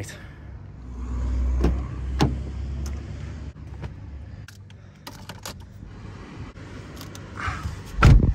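Clicks and handling noises as someone gets into a Volkswagen car, with a low rumble early on. The loudest sound is a car door shutting with a heavy thump at the very end.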